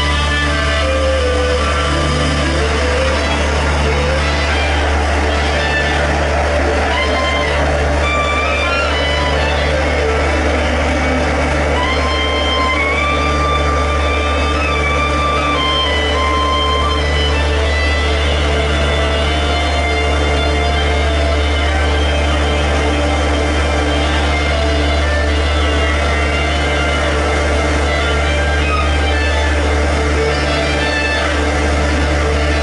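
Live electronic music: a steady deep bass drone with a synth note pulsing about once a second, under a clarinet playing a slow melody of held notes.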